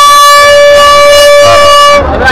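A loud horn blast on one steady pitch, held without a break and stopping abruptly near the end.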